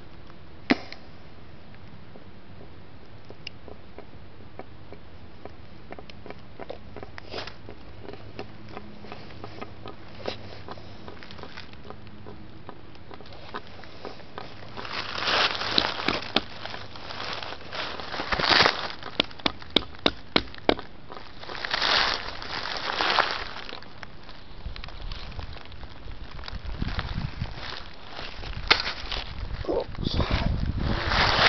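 A faint steady low hum, then crackling and rustling of dry leaf litter close to the microphone in swells of a second or two, with a quick run of about six sharp clicks about two-thirds of the way in and a low rumble near the end.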